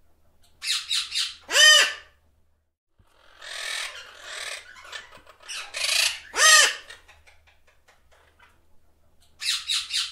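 Blue-headed parrots calling in two rounds of short harsh squawks. Each round ends in a louder call that rises and falls in pitch.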